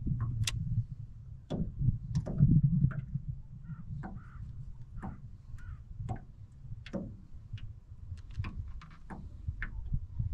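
Light, irregular clicks and taps aboard a small fishing boat, over a low rumbling noise that is strongest in the first few seconds; the clicks come closer together near the end.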